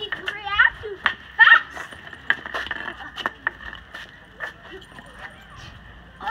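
Street hockey sticks knocking against a ball and the asphalt, a string of sharp, irregular clacks. A child says "thank you" with a laugh near the start; that voice is the loudest sound.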